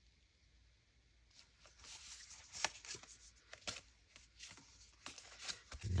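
Faint rustling and light taps of paper and cardstock pieces being handled and laid on a journal page. It is almost silent at first, and scattered short rustles begin about a second and a half in.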